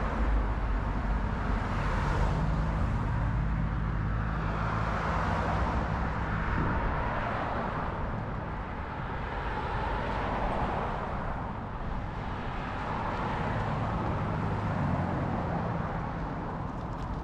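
Road traffic on a multi-lane highway: cars driving past, their tyre and engine noise swelling and fading several times over a steady traffic hiss.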